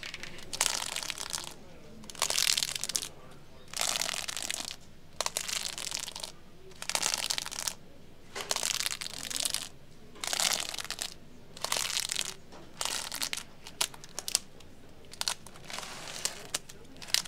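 Vinyl LPs in plastic sleeves flipped one at a time in a crate, each flip a crinkly swish of plastic, about one every second and a half. It follows long fingernails scratching over a desk globe at the start.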